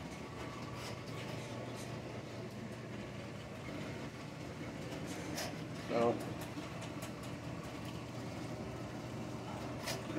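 Water running steadily through a basement floor drain from a hose left on full flow, over a low steady hum.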